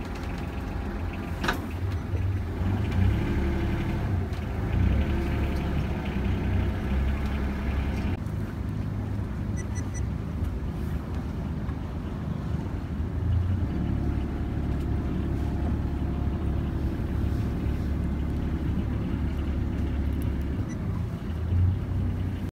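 A canal tour boat's motor runs steadily, a low drone. Its higher-pitched noise falls away about eight seconds in.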